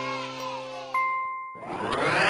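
Cartoon sound effects: a single bright ding about a second in as the backing music fades out, then a rising whoosh starting near the end.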